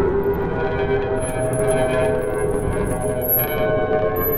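Experimental ambient electronic music made by resonance synthesis: many sustained, overlapping ringing tones over a dense low rumbling noise bed, with thin high tones coming in about a second in.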